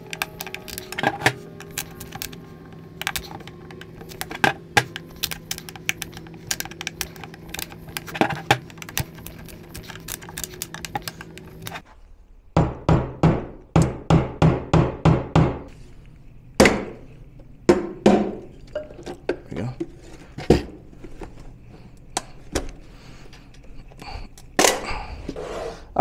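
Claw hammer tapping a blade into the seam of a plastic battery case to pry the lid off: scattered knocks and sharp cracks, then a fast run of about a dozen hammer blows, about four a second, around the middle. A steady low hum runs under the first half.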